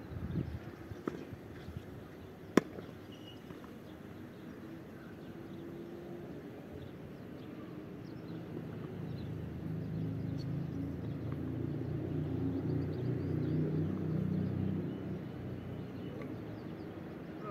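A tennis ball struck once by a racket, a sharp pop about two and a half seconds in, with a few fainter hits from the far end. In the second half a low engine hum swells up and eases off again near the end.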